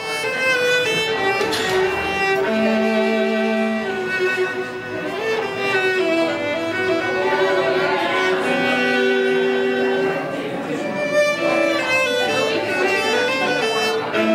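Solo violin playing a slow passage of held notes, each note wavering in pitch with vibrato.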